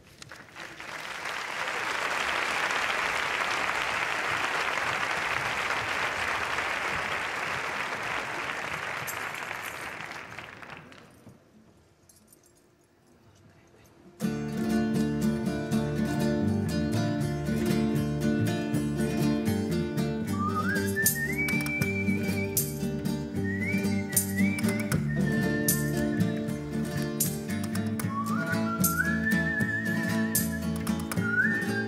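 Audience applause for about ten seconds, dying away into a few seconds of quiet. Then a folk group starts a jotilla on strummed guitars and other plucked strings with a steady beat, and a goatherd's whistle glides upward and holds a high note several times over it.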